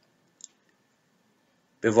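A pause of near silence broken by one short click about half a second in, before a man's voice resumes near the end.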